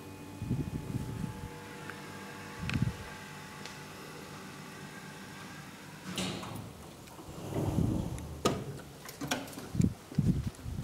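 KONE hydraulic elevator running with a steady hum as the car arrives, with a single knock about three seconds in. The hum stops about six seconds in and is followed by a run of clicks and knocks from the landing door's latch and handle as the swing door is pulled open.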